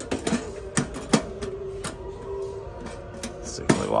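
Tin ammo-crate-style box with a metal lid and wire latch being shut and latched by hand: a series of sharp metal clicks and clanks, the loudest about a second in.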